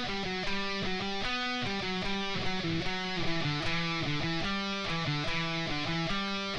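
Electric guitar playing a melodic line of single picked notes, a short harmony figure that steps back and forth between a few notes, several notes a second.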